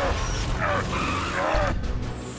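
Animated action soundtrack: music over a deep low rumble, with short vocal sounds, cut off abruptly near the end.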